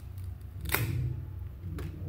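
1997-98 Topps basketball cards being handled and sorted in the hands, with one sharp card snap a little past halfway and a lighter click near the end, over a low steady hum.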